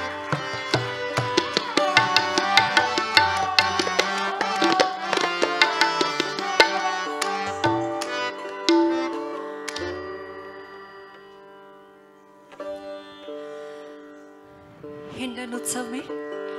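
Live Hindustani classical accompaniment of sitar and tabla: quick plucked sitar phrases over tabla strokes for about ten seconds, then thinning out to a few held drone notes with scattered strokes, and picking up again near the end.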